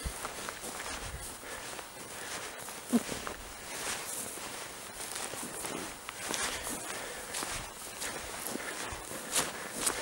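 Footsteps of a hiker walking down a grassy mountain slope, an uneven run of soft steps with swishing grass, and a sharp knock about three seconds in.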